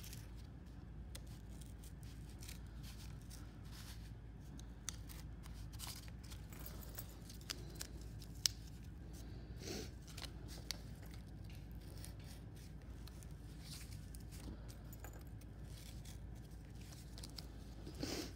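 X-Acto craft knife scoring and cutting through cardboard: faint scratchy strokes and small clicks, with a few sharper ticks.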